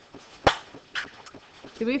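A few sharp clicks or knocks in a quiet room, the loudest about half a second in and a softer one at about one second; a woman's voice starts near the end.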